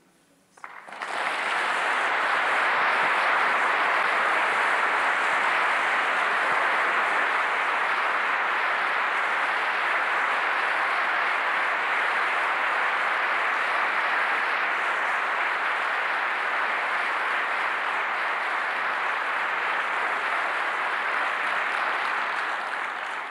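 Audience applauding, beginning about a second in and holding at an even level throughout.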